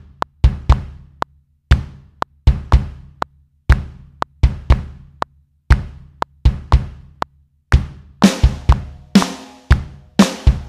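Software drum kit in Logic Pro, triggered by MIDI and played in real time: a kick-and-snare beat with slightly loose timing. Near the end, as the loop comes round for the overdub, cymbal hits with long ringing decays join the beat.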